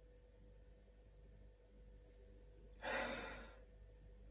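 Near silence, then about three seconds in a single breath: a short sigh-like rush that fades within a second, from a man with his nose in a stemmed whisky nosing glass.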